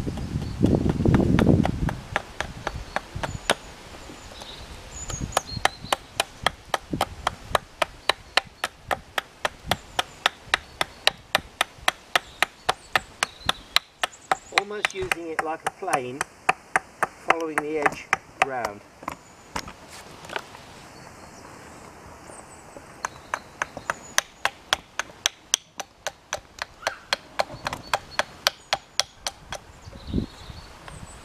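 Small carving hatchet chopping a wooden spoon blank against a log chopping block: a quick, steady run of sharp chops, about three a second, thinning out for a few seconds after the middle before picking up again. Wind buffets the microphone at the start.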